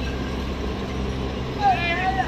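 Steady low hum of sugarcane-unloading machinery and engines, with a person's short call about one and a half seconds in.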